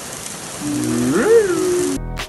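A steady sizzling hiss from a mushroom frying on a griddle. About half a second in, a person's drawn-out wordless vocal sound joins it, rising then falling in pitch and lasting over a second.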